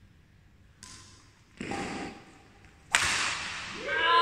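Badminton racket striking a shuttlecock: one sharp smack about three seconds in, ringing on in the large hall, after a softer stretch of court noise. A voice starts just at the end.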